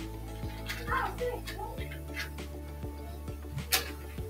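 Faint background music under light handling clicks, with one sharper click near the end, as a candle is being relit by hand.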